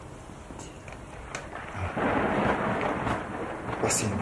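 A rushing, rumbling noise that grows louder about halfway through and eases near the end.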